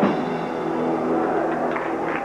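A rockabilly band's final chord struck hard on electric guitar at the start and left to ring out, slowly fading.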